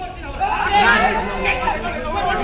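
Several men shouting and calling over one another as defenders tackle a kabaddi raider, getting loud about half a second in.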